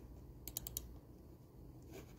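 A quick run of four faint, light clicks about half a second in, over a low steady hum.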